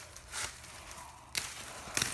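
Dry leaves and dead plant stems rustling and crackling as they are disturbed, with a sharp click a little past halfway through and another at the end.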